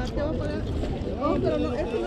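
Indistinct voices talking, overlapping at times, over a low rumble of wind on the microphone.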